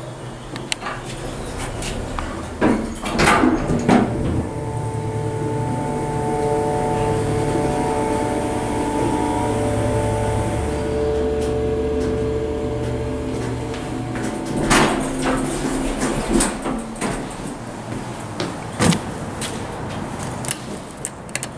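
Dover traditional hydraulic elevator in use: the door slides shut with a few knocks, then the car travels with a steady hum and whine for about ten seconds before stopping. The door slides open again and a few more knocks and clatter follow.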